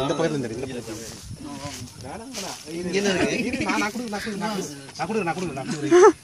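Several men talking over one another, with a sudden loud shout near the end.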